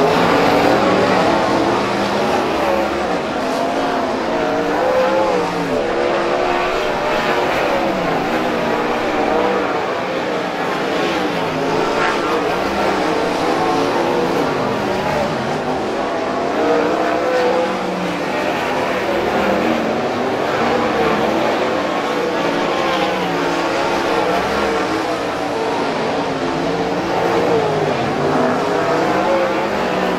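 Winged sprintcar V8 engines running on a dirt oval at low speed, their pitch continually wavering up and down as the throttles are blipped and eased.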